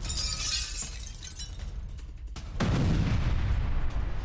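Breaking-news graphic sound effects over low music: a shimmering, glassy whoosh at the start, then about two and a half seconds in a deep boom that rumbles on.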